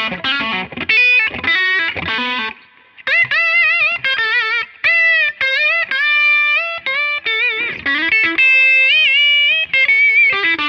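Gibson 2014 Les Paul Standard Premium electric guitar with BurstBucker humbuckers, both pickups switched out of phase, played through an overdriven amp. A quick run of notes is followed by a short break about three seconds in, then sustained, bent notes with vibrato.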